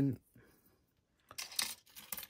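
Grey plastic model-kit sprues and loose parts clattering against each other as a sprue is set down onto the pile, a short run of light clicks and rattles in the second half.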